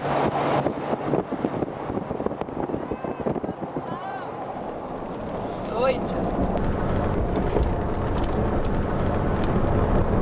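Road and wind noise inside a moving car's cabin, with wind buffeting the microphone. Brief rising voice sounds come faintly over it around the middle.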